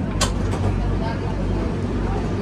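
Metro train running: a steady, loud low rumble and rattle heard from inside the carriage, with one sharp click about a quarter of a second in.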